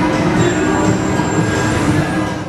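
Loud, dense casino-floor din: slot machines' electronic jingles and tones over a steady wash of noise. A thin high tone is held for about a second and a half, from about half a second in.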